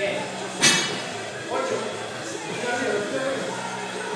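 Loaded barbell set down on the floor with one sharp metallic clank about half a second in, over background music and voices.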